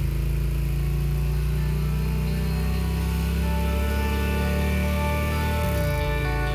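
A cruiser motorcycle's engine running steadily at an even pitch, dipping briefly and picking up again near the end. Music comes in over it.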